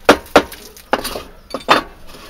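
A few sharp metallic clinks and knocks as a steel workpiece and tools are handled on a pillar drill's table, the two loudest in the first half-second and another near the end.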